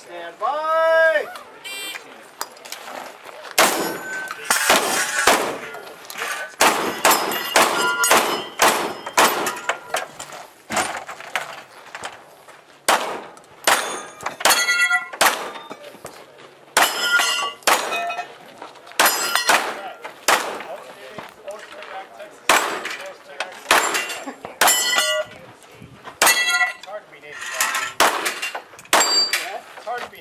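Competition gunfire: dozens of shots in quick strings with short pauses. Many are followed by the ring of hit steel targets.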